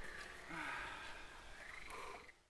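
Faint open-air background with a short low call-like sound about half a second in.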